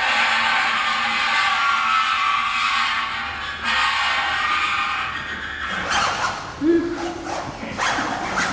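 Clarinets played across a gong, giving a dense, sustained cluster of high tones that fades out about five seconds in. Several short, sharp vocal sounds follow near the end.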